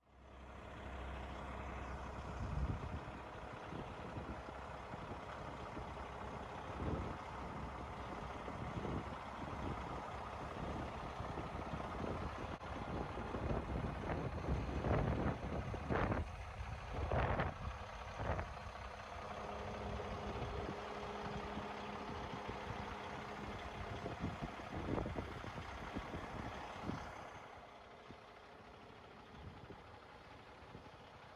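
Peterbilt 389 semi truck's diesel engine running as the truck drives slowly, with a cluster of louder sudden bursts around the middle. The sound drops off a few seconds before the end.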